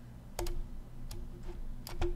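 Computer mouse clicks: a quick double click about half a second in, a single click about a second in, and another double click near the end.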